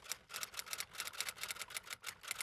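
Typing sound effect: a quick, even run of key clicks, about ten a second, as text is typed out letter by letter.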